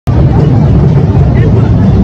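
Voices of a crowd talking over a loud, steady low rumble.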